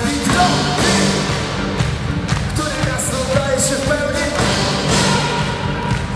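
Live band music played loud in a hall: drums with cymbals keeping a steady beat, and a male lead voice singing over the band.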